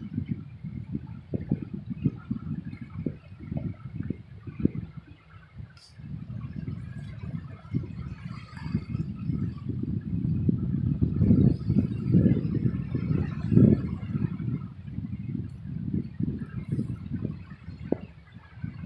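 Wind buffeting the microphone outdoors: an uneven low rumble that rises and falls in gusts, strongest a little past the middle.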